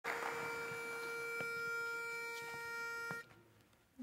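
Pitch pipe sounding the starting note for a barbershop quartet: one steady note held about three seconds, then cut off.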